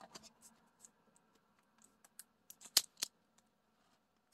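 Clear plastic film over a diamond-painting canvas crinkling as it is handled, heard as scattered faint clicks and crackles, the two loudest about three seconds in.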